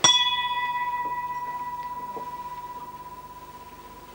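A metal bell struck once: a clear, high ringing tone that starts sharply and slowly fades over about four seconds, pulsing gently as it dies away.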